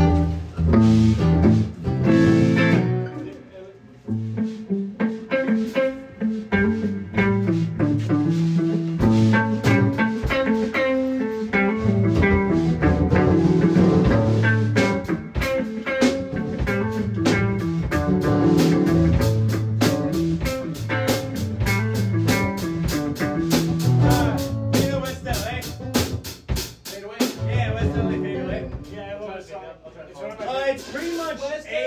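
Electric guitar played through an effects chain (compressor, chorus, phaser), picking quick single-note runs in A minor over a lower part. The playing thins out briefly about four seconds in, then grows busier with rapid picked notes in the second half.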